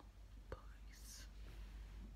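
Near silence over a low steady hum, broken by one soft click about half a second in and a brief breathy whisper or exhale from a woman about a second in.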